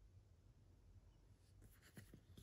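Near silence: room tone with a low hum, and a few faint paper touches near the end as a hand lands on a glossy photo print.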